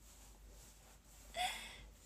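A woman's short breathy gasp of laughter about one and a half seconds in, after a quiet pause.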